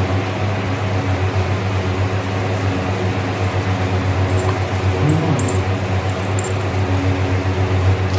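A steady low hum, like a running fan motor, with a few faint clinks of steel dishes.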